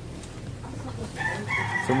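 A rooster crowing in the background: one drawn-out call starting a little past a second in.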